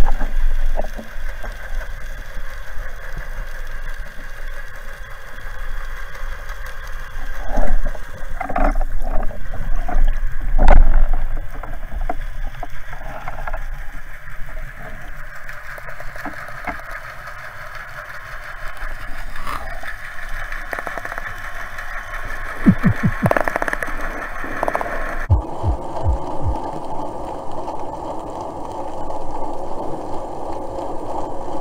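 Underwater sound from a diver's camera: a steady drone of boat engines carried through the water, with scattered knocks and clicks. The sound changes abruptly about 25 seconds in, where the footage cuts.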